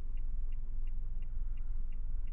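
A car's turn-signal indicator ticking steadily, about three clicks a second, inside the cabin over the low rumble of the car rolling along.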